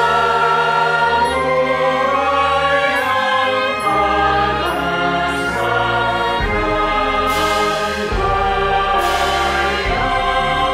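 Mixed choir singing a slow university hymn with a symphony orchestra, the voices holding long sustained notes.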